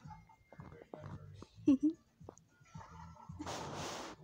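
Mostly speech: low background voices and a short laugh with a called word. Near the end comes a breathy hiss close to the microphone.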